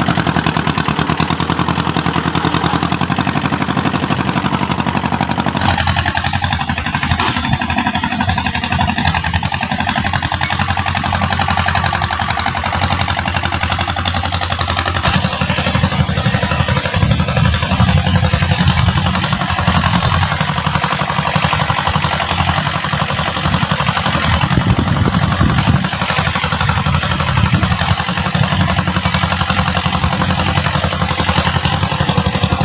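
Small tractor's engine running steadily while it drives and pulls a loaded trailer, with an abrupt change in its sound about six seconds in.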